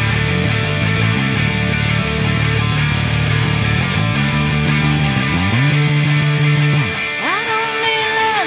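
Rock band playing, with a driving electric bass line and distorted electric guitar. The bass holds one long low note before dropping out about seven seconds in, where a singing voice comes in.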